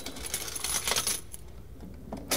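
Large silver coins clinking against each other in the hands: several small metallic clicks with a brief high ring, dying away after about a second and a half.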